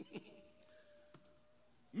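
Quiet room with two faint clicks, one at the start and one about a second in, a brief low vocal sound at the start and a faint steady tone; a man's voice starts speaking right at the end.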